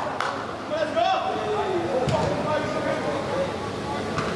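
Indistinct voices of people talking and calling out, with two sharp knocks, one near the start and one about two seconds in.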